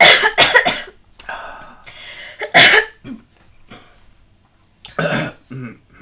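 Stifled laughter breaking up into coughing: a run of short bursts in the first second, a loud cough about two and a half seconds in, and another cough near the end.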